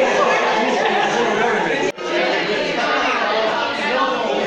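A roomful of people chattering at once, many voices overlapping with no single speaker standing out. The sound breaks off for an instant about halfway through, then the chatter carries on.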